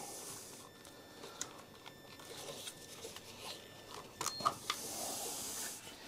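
Gloved hands handling power-supply cables and connectors inside a computer case: faint rustling with a few light clicks and scrapes.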